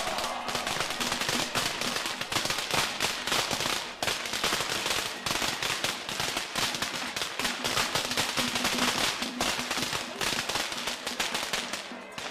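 A string of firecrackers going off in a rapid, continuous crackle of bangs.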